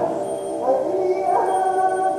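A human voice holding a long wailing note, its pitch bending upward partway through.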